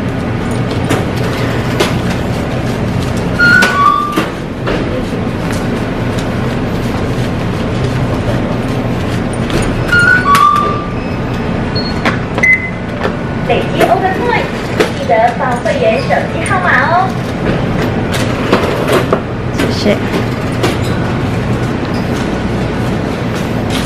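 Convenience-store checkout ambience: a steady low hum with scattered clicks and background voices, and a short two-note electronic beep, high then lower, sounding twice, about four and ten seconds in.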